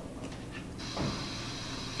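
Classroom room tone: a low steady hum with a few faint clicks. A faint steady hiss comes in just before a second in, with a soft knock just after.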